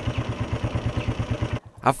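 Motorcycle engine running with a fast, even putter, which breaks off abruptly about one and a half seconds in.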